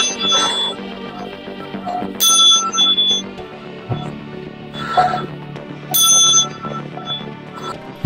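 Small singing chime bell struck three times, at the start, about two seconds in and about six seconds in; each strike rings with high, clear, bell tones that fade. Steady background music runs underneath.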